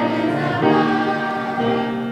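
A group of children singing a song together into a microphone, in held notes that change every half second or so.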